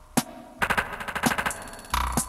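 Electronic percussive hits played on a Korg Volca Sample: a single sharp hit, then a fast stuttering roll of about ten hits a second lasting around a second, and one more hit near the end.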